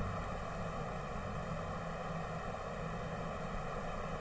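A pause in speech with only a steady hiss and a faint hum of background room and recording noise.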